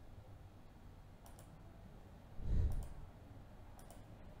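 Faint computer mouse clicks, a couple of separate clicks, with one short soft low sound about two and a half seconds in.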